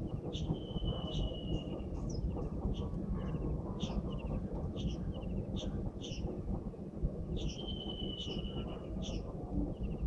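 Wind buffeting the microphone in a steady low rumble, with a bird chirping in short high notes every half-second or so and holding a longer whistle twice, once about half a second in and again past the middle.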